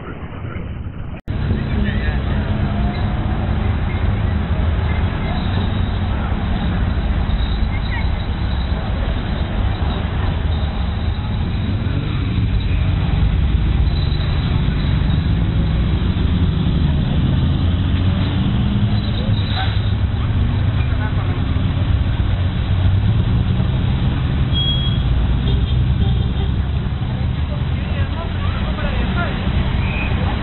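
Engines of classic sports cars running at low speed as they roll past one after another, a steady low rumble whose pitch rises and falls slightly, with people's voices around them. The sound cuts out briefly about a second in.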